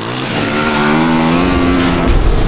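Dirt-track motorcycle engine held at high revs, its pitch climbing steadily.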